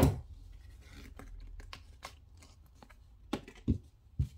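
Hands sliding and rubbing a trading card across a cloth playmat, with scratchy friction and small clicks. A sharp knock on the table comes right at the start and two smaller knocks near the end.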